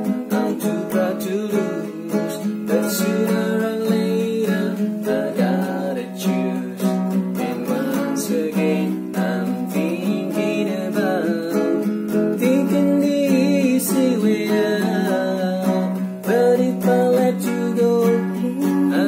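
Nylon-string classical guitar playing a fingerpicked and strummed chord accompaniment through Bm, Em, Am, D, C and B7, with a voice singing the melody along.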